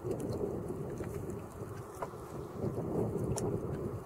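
Wind buffeting the microphone: a steady, fluttering low rumble with a few faint clicks.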